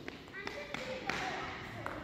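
Faint footsteps and taps of sneakers on a gymnasium floor, with distant voices in the echoing hall.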